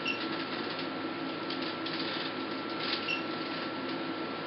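Alma IPL machine firing two pulses about three seconds apart, each a short click with a brief high beep, over a steady hum.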